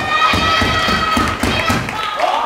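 A wrestler's long, high-pitched yell over a rapid series of thuds on the wrestling ring's canvas, with crowd noise underneath.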